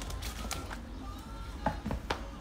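Bagged comic books being handled and flipped through in a cardboard box: a few sharp clicks and plastic ticks, the last two close together near the end.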